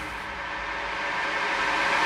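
Hardstyle build-up: a synthesized white-noise riser that swells steadily louder, with no beat under it.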